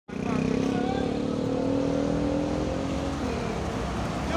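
Diesel engine of a John Deere CP-series motor grader driving past, a steady drone whose pitch sinks slightly and fades about three seconds in.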